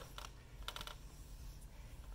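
A few faint, light clicks from a steel foot-operated carpet stretcher being lifted off the carpet and stepped off: one click near the start, then a short cluster a little later.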